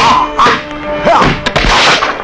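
Dubbed kung fu film sound effects: about four sharp whacks of forearm blows against bamboo training poles, roughly half a second apart, over a music score. A longer crashing burst comes near the end.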